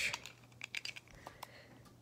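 Faint, irregular little clicks and taps of die-cast toy cars being picked up and handled.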